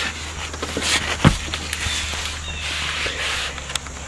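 Rustling and scuffing as a person gets down onto the ground while holding a phone camera, with a single sharp knock a little over a second in.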